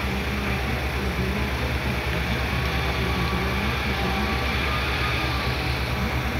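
Heavy diesel engine idling steadily, an even low throb with no change in speed.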